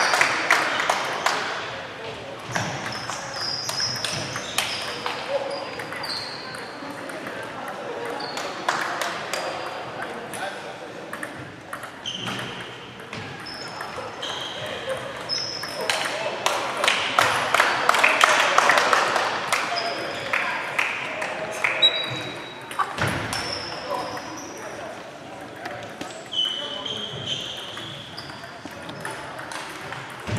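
Table tennis balls clicking off tables and bats at many tables at once in a large, echoing sports hall, over a background of voices. Short high-pitched squeaks and pings come and go through the rally noise.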